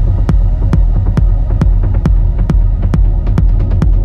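Techno music: a steady four-on-the-floor kick drum at about two beats a second over a deep, sustained bass drone.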